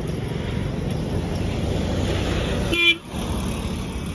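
Steady road traffic noise from a highway, with one short vehicle horn toot just before three seconds in, the loudest sound.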